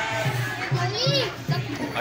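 Children's voices calling out over background music, with one high child's shout about a second in.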